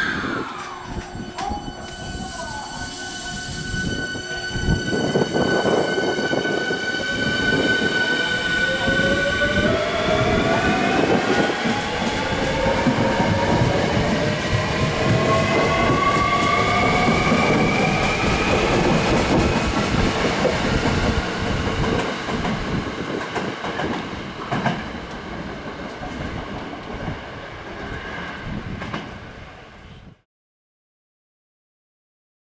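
Hankyu 1300 series electric train pulling away, its Toyo Denki IGBT VVVF inverter (RG6021-A-M) driving the traction motors. A steady high whine holds for the first several seconds. Then, from about ten seconds in, several tones rise together in pitch as the train gathers speed, over growing wheel noise, and the sound fades near the end as the train leaves.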